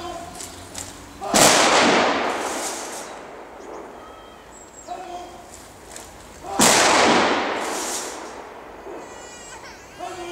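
Two rifle volleys of a military funeral honour salute, about five seconds apart. Each is a sharp crack from several rifles at once, followed by a long echoing decay.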